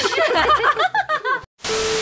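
Laughter and exclaiming voices for the first second and a half, then a sudden cut to silence and a burst of TV-static hiss with a steady beep tone: a static-glitch editing transition effect.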